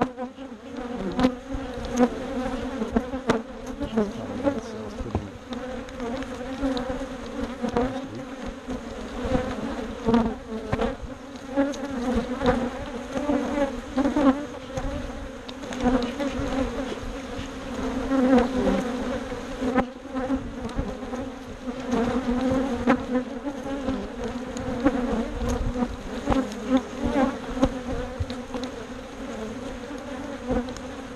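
Honey bees buzzing close around an open hive: a steady, dense drone from many bees in flight. Occasional clicks and knocks come from the wooden hive boxes and frames being handled.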